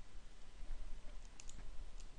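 Faint computer mouse clicks, a quick pair about one and a half seconds in, over low room hiss.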